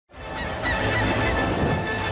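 Birds calling: a few short, curving calls in the first second or so, over a steady low background.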